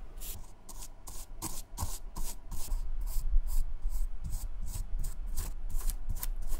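Flat synthetic-bristle brush stroking dye into the mesh and suede upper of a New Balance 773 running shoe: short, quick brushing strokes, about three a second.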